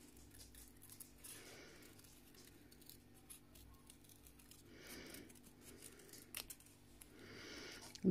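Small scissors cutting out a paper heart: faint, crisp snips and light paper rustle, coming in a few short spells.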